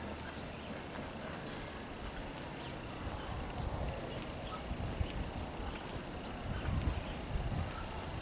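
Faint outdoor background noise with an uneven low rumble and one brief high chirp a little past the middle.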